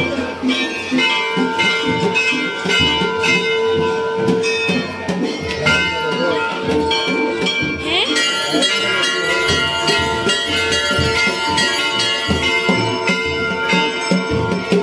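Many temple bells being rung by devotees, strikes coming several times a second and overlapping, their ringing tones hanging on, with crowd voices underneath.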